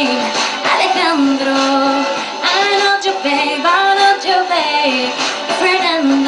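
A woman singing a pop song with music behind her, holding and sliding between long notes, with several pitches sounding together.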